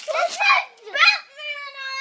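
A young child's voice: a few quick excited syllables, then one long high-pitched call about one and a half seconds in that drops in pitch as it ends.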